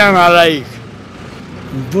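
A man's voice trailing off in the first half second, then steady street traffic with a bus passing close by. Speech starts again near the end.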